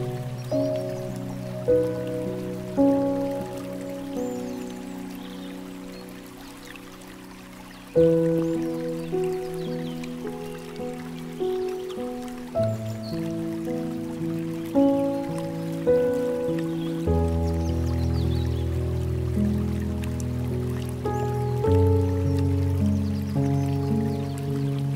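Slow, gentle piano music, one note or chord at a time, each ringing and fading; a phrase dies away about a third of the way through before a fresh chord comes in. A faint trickle of flowing water runs under it.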